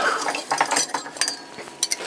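Metal pottery trimming tools clinking against each other in a series of short, light clicks as one is picked out from among the others.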